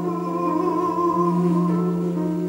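A soprano singing a long held note with vibrato in a classically trained operatic voice, over a sustained instrumental accompaniment.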